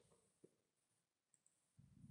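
Near silence between narrated sentences, with one faint short click about half a second in.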